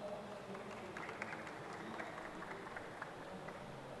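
Faint, scattered clapping from an audience over low room noise.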